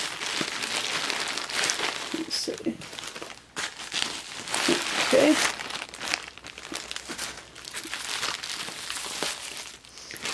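Plastic poly mailer bag crinkling and rustling as it is handled and opened, with bubble wrap crackling near the end.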